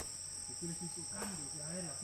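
Jungle insects trilling steadily at two high pitches, with a faint voice in the background from about half a second in.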